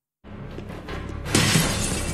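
Film score music with a pane of glass shattering loudly about a second and a half in.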